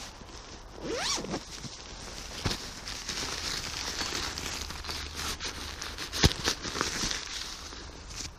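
A zip pulled open with a rising zing about a second in, then steady rustling and crinkling of the tent's nylon fabric and bag being handled, with a sharp click about six seconds in.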